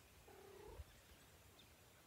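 Near silence: quiet outdoor ambience with a faint low rumble, and one short, faint animal call about half a second long, starting about a quarter second in.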